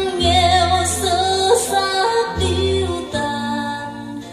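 A song with a woman singing long, held notes over a bass line, played back from a cassette on a Nakamichi 1000ZXL deck.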